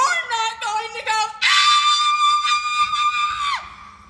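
A girl's high voice on stage: a few quick gliding syllables, then one long, high held note that slides down at the end.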